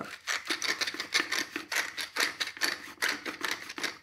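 Hand-twisted pepper mill grinding peppercorns: a quick, even run of gritty clicks, about five a second, that stops near the end.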